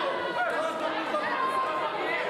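Many voices chattering at once in a large hall, with no single speaker standing out.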